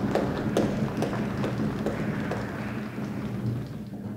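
An orchestra's welcome of string players tapping bows on their music stands and musicians stamping on the wooden stage: many irregular sharp taps with a few louder knocks, over a low steady hum.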